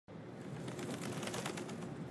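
Birds chirping over steady outdoor background noise.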